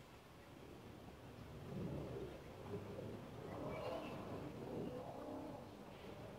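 Faint outdoor ambience: a low rumble of a vehicle passing at a distance, swelling up about two seconds in and easing off near the end, with a brief bird chirp about four seconds in.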